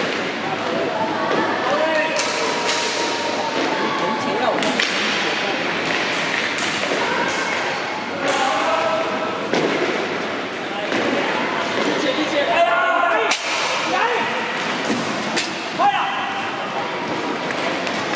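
Inline hockey play in a large echoing hall: irregular sharp clacks and knocks of sticks hitting the puck and the rink boards, over the rolling of skate wheels on the wooden floor and distant shouts of players and spectators.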